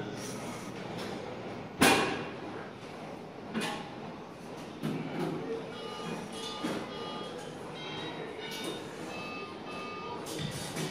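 Gym equipment noise: a single sharp clank about two seconds in, then a few fainter knocks, over steady room noise and faint background music.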